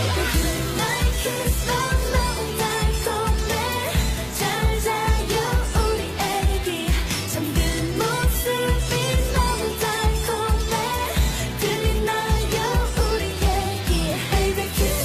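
Chinese pop song playing, a singer's melody over a steady heavy beat, as backing music for a dance routine.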